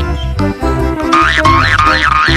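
Cheerful children's background music with a steady beat. About a second in, a cartoon sound effect warbles up and down in pitch about three times.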